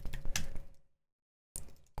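Keystrokes on a computer keyboard: a run of quick clicks as a short command is typed and entered, then a second of dead silence, then a few more clicks.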